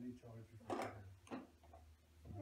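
Faint, short vocal sounds and breaths from a baby, a few brief noises in about two seconds, over a low steady room hum.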